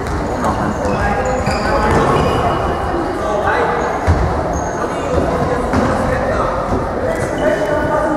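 Indoor football played in an echoing sports hall: the ball is kicked and bounces on the hard floor, with one sharp kick about halfway through, and shoes squeak briefly against the floor. Players and spectators call out and talk throughout.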